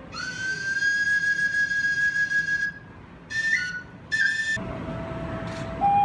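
Solo flute: one long held high note that slides up a little as it starts, then two short notes. A second flute then comes in lower, over louder room noise, playing a melody that climbs in steps.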